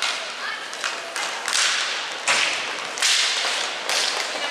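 Inline hockey sticks and skates on a plastic rink floor: a string of about five sharp slaps and scrapes, each trailing off in a hiss.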